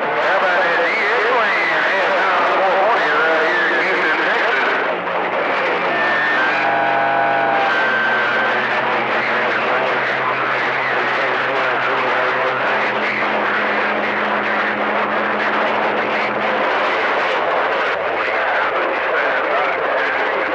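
Channel 28 on a CB radio receiver: loud static with garbled, overlapping distant voices. Steady humming and whistling tones come from other stations' carriers beating against each other, with a brief cluster of higher whistles several seconds in.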